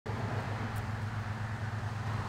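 A motor running with a steady low drone.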